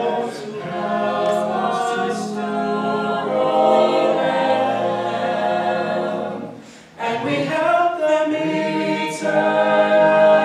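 Mixed male and female a cappella group singing in close harmony, a lead voice on the microphone over sustained backing chords. The sound dips briefly about seven seconds in, then the chords come back in and grow louder.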